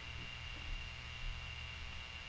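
Quiet room tone: a steady low hum and hiss, with a faint thin high whine held on one pitch.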